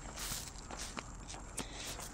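Faint footsteps on an asphalt path, a few soft taps and scuffs, as a person and a Siberian husky on a leash walk slowly.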